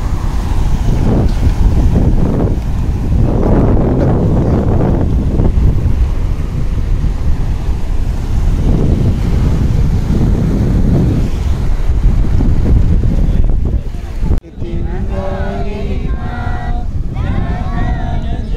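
Sea surf washing over a rocky shore, mixed with heavy wind noise on the microphone, swelling and easing. Near the end the sound cuts off abruptly and voices take over.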